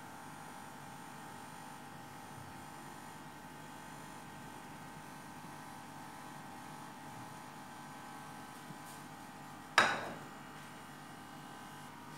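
Steady electrical hum with one sharp knock, ringing briefly, a couple of seconds before the end.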